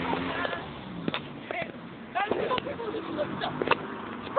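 Short, wordless vocal sounds over a steady outdoor background noise, with a few sharp clicks scattered through.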